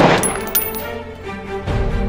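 Background music with sustained tones. Right at the start there is a loud burst of noise, and within the first second it is followed by a few sharp, metallic-sounding clicks.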